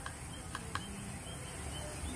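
Three faint light clicks of a PVC fitting being handled on the end of a PVC pipe, over a quiet steady background.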